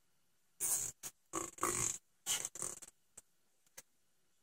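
Nylon zip tie being cinched tight, ratcheting through its locking head in about four short zipping pulls over two seconds, then two faint clicks.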